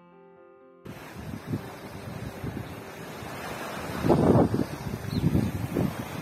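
A piano note dies away in the first second. Then the live sound of the shore cuts in: wind buffeting the microphone over small sea waves washing against rocks, with the strongest gusts about four seconds in and again near the end.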